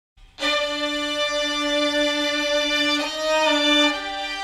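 Violin playing long, sustained bowed notes, moving to a new note about three seconds in.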